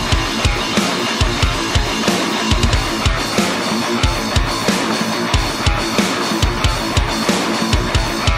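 Heavy metal riff on a Dean electric guitar played through heavy distortion, over a drum backing with a fast, steady kick drum.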